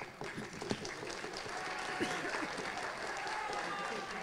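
An audience applauding, many hands clapping, with several voices talking and calling out over it.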